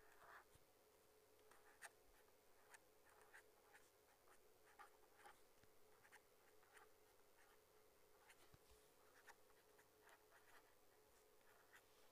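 Faint, irregular short scratches and taps of a felt-tip pen writing on paper, a few strokes a second, over near silence.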